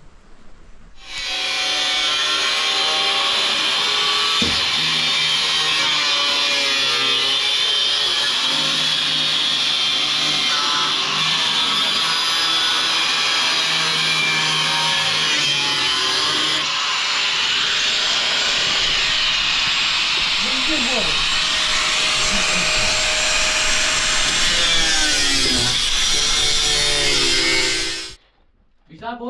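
Handheld electric angle grinder starting up about a second in and cutting metal, its whine shifting in pitch as the disc bites and eases; it stops abruptly at the end.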